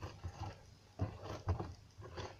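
Hands pressing and squishing homemade slime against a tabletop: a series of soft, irregular squelches and light taps.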